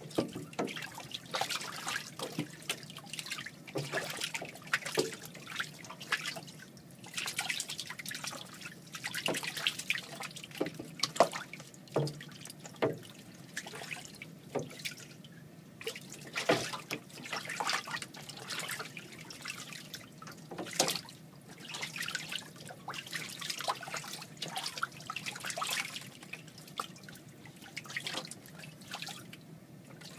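Two young ducks splashing and bathing in a water-filled utility sink: irregular small splashes and drips of water come and go throughout.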